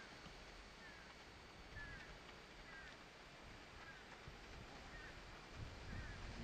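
Near silence: faint outdoor ambience with a bird giving short, falling chirps about once a second.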